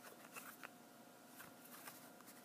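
Near silence, with a few faint clicks and light rubbing as a hard plastic coin slab is turned in the hand.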